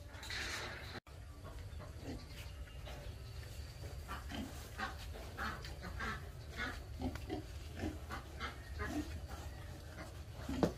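Several young pigs grunting, short separate grunts several a second from about four seconds in, over a steady low rumble.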